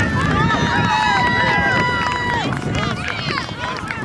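Sideline spectators shouting and cheering, many voices at once, with one voice holding a long yell for about two seconds in the first half.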